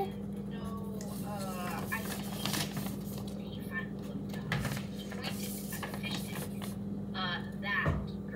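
Faint background speech and music over a steady low hum, with scattered light clicks and taps.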